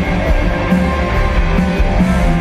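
Rock band playing live and loud: electric guitars, bass, keyboard and drum kit over a steady beat.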